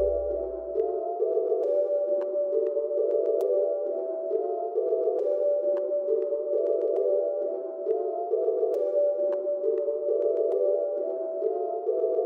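Outro of a dark rap instrumental beat: the deep bass drops out about a second in, leaving a mid-register melodic loop that repeats roughly every two seconds, with a few faint ticks.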